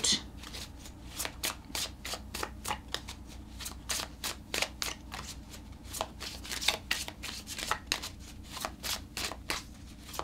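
A deck of tarot cards being shuffled by hand: a run of quick, crisp card clicks, several a second, going on throughout.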